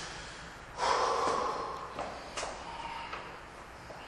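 A powerlifter's loud, forceful breath out about a second in, then heavier breathing that fades, with two small clicks shortly after, as he braces for a heavy rack deadlift.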